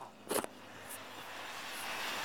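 A phone being handled while it records: a short bump against the microphone, then a steady rushing noise that slowly grows louder.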